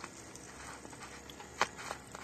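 Low, steady background noise broken by one short, sharp click a little over one and a half seconds in.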